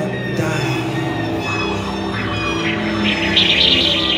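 Live music from a rock band with a chamber orchestra: keyboard with bowed strings, cello and double bass, and French horn, layered held notes, with a brighter, busier high part coming in about three seconds in.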